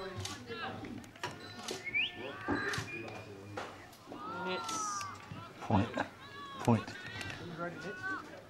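Spectators shouting and calling out, several voices overlapping with high, drawn-out yells, the loudest about six seconds in as a kick at goal goes through.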